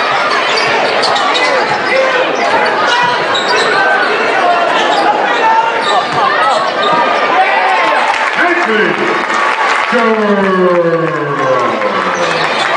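A basketball being dribbled on a hardwood court, with the steady voices of an arena crowd around it; near the end a voice slides down in pitch.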